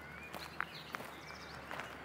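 Footsteps on a gravel path, a few uneven steps, with birds chirping in the background.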